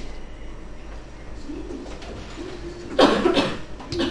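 A faint low murmur, then about three seconds in a short, loud vocal burst from a person lasting under a second.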